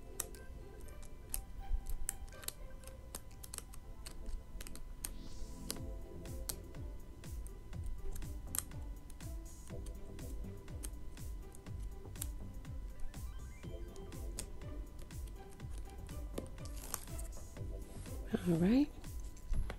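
Small irregular clicks and taps as the tip of a pair of scissors pushes a stiff acetate sheet's slits over a journal's wire spiral binding, with soft background music underneath.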